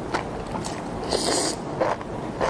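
Close-miked eating sounds: a mouthful of thin strands in sauce being slurped in and chewed, with a longer slurp about a second in among short wet mouth noises.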